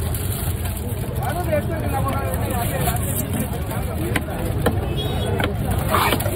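Busy fish-market din: overlapping background voices over a steady low rumble. In the second half, a few sharp knocks of a heavy knife chopping tuna on a wooden block.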